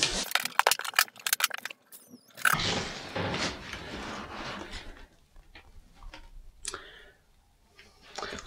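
Hard-shell guitar flight case being unlatched and opened: a quick run of sharp latch clicks, then rustling and light knocks as the lid is lifted back, with a few faint clicks after.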